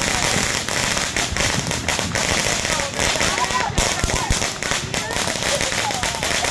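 Ground fountain firework burning with a dense, continuous crackle of rapid small pops.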